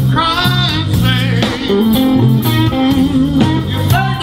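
Electric blues band playing live, with electric guitar over a steady bass line and sliding, bent notes.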